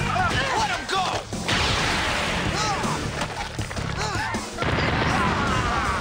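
Action-fight soundtrack: background music under battle sound effects, with quick rising-and-falling tones throughout. A long burst of dense crashing noise runs from about one and a half to four and a half seconds in.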